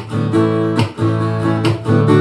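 Acoustic guitar strummed in chords, the strokes about a second apart with the chords ringing on between them, in an instrumental passage of a song.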